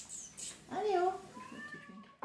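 A domestic cat meowing: one drawn-out meow that starts a little under a second in and bends in pitch.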